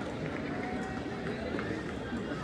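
Faint distant voices over steady outdoor background noise.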